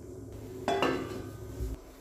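A stainless steel plate set as a lid onto a metal kadai clinks about two-thirds of a second in, with a short metallic ring, and a dull knock follows near the end.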